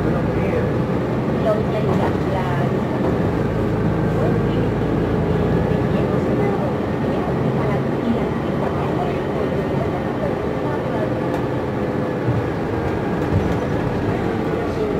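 Cabin noise of a New Flyer XN60 articulated natural-gas bus under way: steady engine and road rumble with a steady drivetrain hum, and voices in the background.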